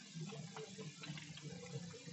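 Faint background ambience: an even hiss with a faint low hum running under it.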